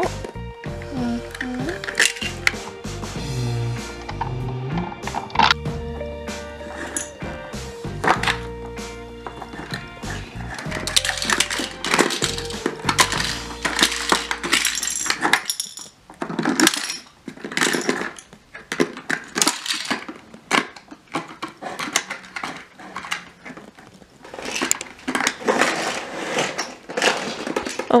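Background music with a steady bass line for about the first half, giving way to irregular clattering of small toy cars against a plastic carrying case and a tile floor.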